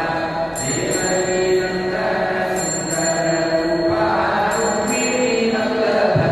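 Devotional mantra chanting with music, sung steadily, with a high, thin metallic ringing that comes back about every two seconds.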